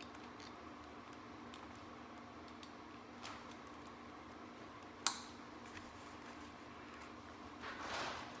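Fastening the chin-strap buckle of a Fox Racing mountain-bike helmet: small plastic clicks and fiddling, with one sharp click about five seconds in, over a steady low hum.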